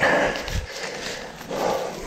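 A mountain biker breathing hard while climbing, two heavy exhalations about a second and a half apart, with low knocks from the ride over rough ground.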